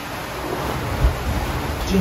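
Wind buffeting the microphone over the wash of the sea around a sailing yacht under way: a steady noise, heaviest in the low end.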